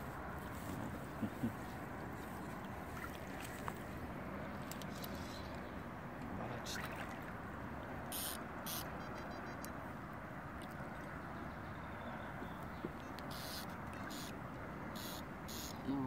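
Hooked carp splashing at the water's surface as it is played in close to the bank, a few short splashes standing out, a pair about halfway through and more near the end, over a steady background noise.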